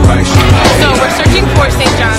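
Background music with a steady drum beat and bass, and a voice line over it.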